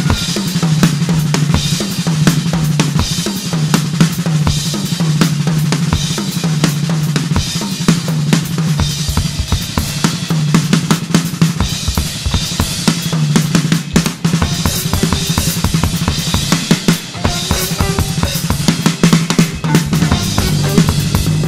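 Live jazz-fusion band, the drum kit prominent with fast, busy snare, bass-drum and cymbal work over a repeating low sustained bass figure.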